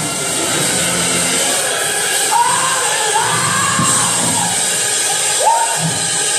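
Live gospel music: a singer's long, gliding held vocal lines over instrumental accompaniment, with a congregation cheering and shouting in a large hall.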